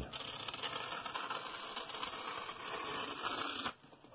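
Scissors slicing through a black plastic mailing bag in one continuous rasping cut that lasts about three and a half seconds and stops abruptly.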